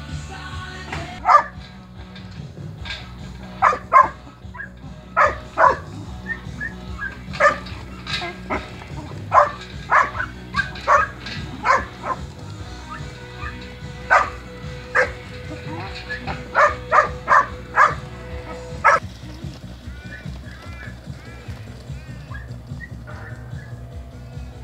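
Working kelpie barking at a mob of sheep to move them: about twenty sharp single barks at irregular spacing, stopping a few seconds before the end. Background music runs underneath throughout.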